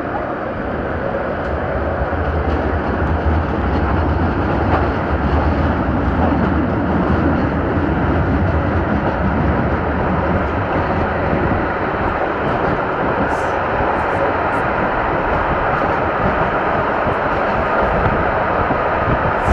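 Tram running along its rails, heard from on board: a steady rumble of wheels on track with a low motor hum that is strongest in the first half, and a faint steady whine above it.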